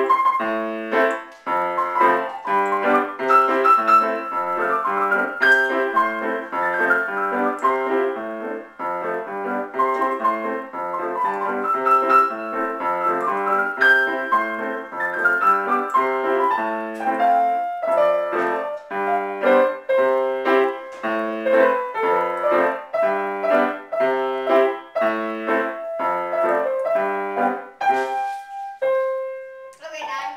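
Grand piano played by two people at once, a child and an adult: a duet of repeated chords and a melody in a steady pulse, finishing with a last held note near the end.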